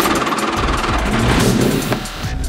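Racing car engine revving hard, its pitch climbing in the second half before cutting off abruptly, laid over background music.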